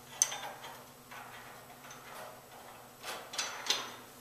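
Small steel parts clinking as bolts and nuts are handled and set into steel 4-link suspension bracket plates. There is one sharp clink just after the start, a few faint ones, and a quick run of three clinks near the end.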